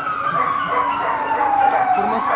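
A wailing siren, its pitch falling in one long slow sweep.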